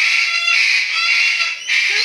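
A parrot screeching: one long, loud, grating screech, a short break near the end, then a second brief screech.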